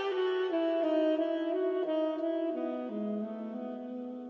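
Saxophone playing a slow, legato melody with several notes sounding together, settling onto a long low held note about three seconds in.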